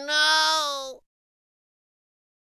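A single drawn-out, voice-like call at a nearly steady pitch. It breaks briefly and then carries on, ending about a second in.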